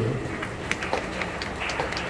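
Background noise of a large hall full of seated people, with a few faint clicks.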